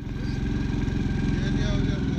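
A motor vehicle engine running steadily at low revs, its firing a fine, even pulse; it starts abruptly.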